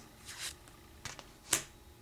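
Plastic playing cards handled in the hand as the front card is taken off the deck: a faint slide, then small clicks, the sharpest about a second and a half in.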